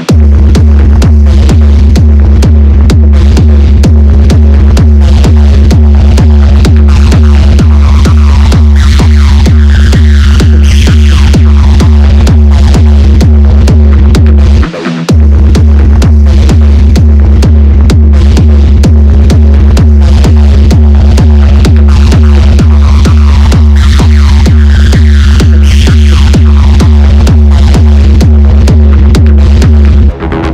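Techno track: a heavy four-on-the-floor kick drum and bass come in at the start, with synth layers above. The kick and bass cut out for a moment about halfway through, then return.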